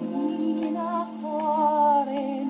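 A 78 rpm shellac record playing on a gramophone: a woman's voice sings with a wide vibrato, ending on a long held note, over a sustained orchestral accompaniment. Faint surface clicks from the disc recur about every three-quarters of a second, once per turn of the record.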